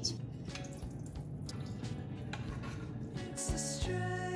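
Liquid from an opened can of tuna trickling and dripping as it is poured off, stopping a little before the end, over background music.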